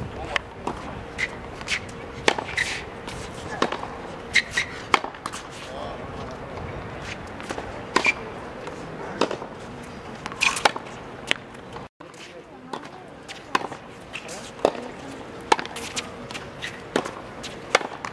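Tennis balls struck by racket strings and bouncing on a hard court: sharp pops at irregular intervals, about one every half second to a second, with a brief dropout about two-thirds of the way through.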